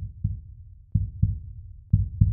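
A heartbeat sound: low double thumps, lub-dub, about a quarter second apart, repeating roughly once a second.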